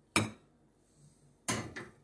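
Metal spoon knocking against a ceramic soup bowl, twice: once just after the start and again about a second and a half in, each knock ringing briefly.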